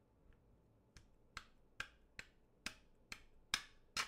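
Sharp clicks, about two a second from about a second in and loudest near the end, as a steel bolt that is sticking is wiggled and forced through a 3D-printed plastic caster housing and its plastic spacers.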